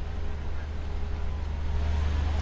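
A steady low rumble under an even background hiss, with no speech.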